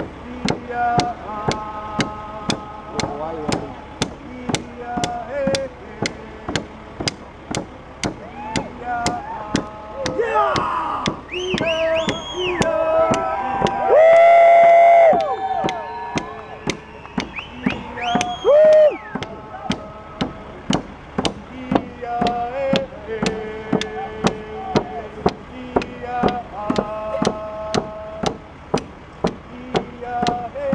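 Drums beating a steady pulse of about two strokes a second while a group of voices sings a song. A loud held vocal call rings out close by about halfway through, with a shorter one a few seconds later.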